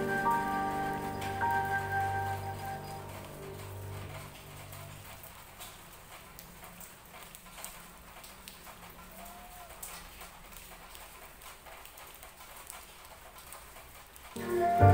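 Gentle flute music fading out over the first few seconds. After it, a soft patter of light rain with scattered drips.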